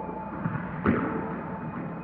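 Designed soundtrack: a single sharp hit about a second in that rings out, over a steady droning tone.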